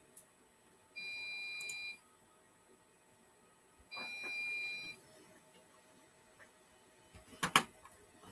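QNAP NAS system buzzer giving two steady one-second beeps about three seconds apart, signalling a drive change while a disk is swapped out of its bay. A sharp click near the end.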